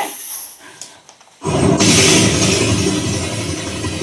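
A sudden loud, rushing blast of noise starts about a second and a half in and fades slowly. It is a stage sound effect marking the shooting of the prisoners.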